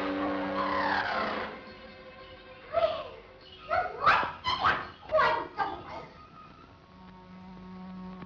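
Cartoon soundtrack: a held chord with a tone sliding downward that dies away, then several short, shrill swooping cries, and a low sustained note near the end.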